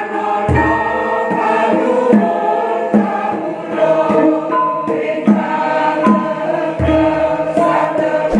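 Mixed church choir singing a Javanese Catholic hymn with gamelan accompaniment. Two deep, long-ringing low strikes sound, about half a second in and again near the end.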